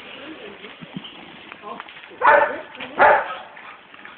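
A dog barking twice in quick succession, with a low murmur of voices and other pound noise around it.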